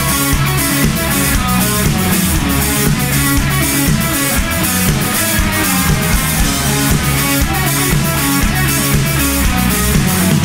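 Rock band playing live: electric guitars over a driving drum kit beat with regular cymbal hits, in an instrumental passage with no singing.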